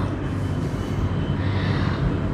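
Steady background hum and hiss, low and even throughout, with no distinct events.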